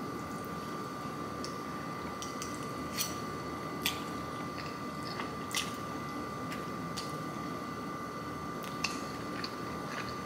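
A person eating a forkful of buttery miso noodles: slurping the strands in and chewing, over a steady background tone. A few sharp clicks stand out, about four across the stretch.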